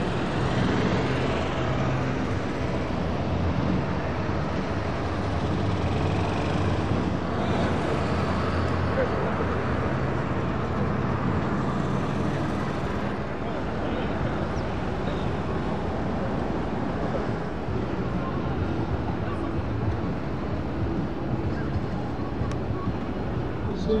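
Busy outdoor crowd ambience: a steady rumble and hiss with an indistinct announcer's voice over loudspeakers and people talking.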